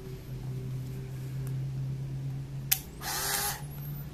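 Aikon F-80 compact 35 mm camera being fired: a single sharp shutter click about three-quarters of the way in, a short whir of its motor drive, then a faint high whine rising as the flash recharges. A steady low hum runs underneath.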